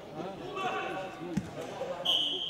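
A futsal ball bounces once on the sports-hall floor about one and a half seconds in, a single dull thud, over indistinct voices in the hall.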